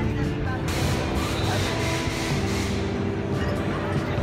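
Background music over the voices of a street crowd, with a rushing hiss that starts about a second in and fades near the end.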